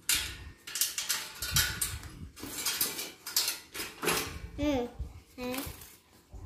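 Irregular metallic clanks and knocks as the steel frame and parts of a rice huller are handled and fitted together, with a couple of short voice sounds near the end.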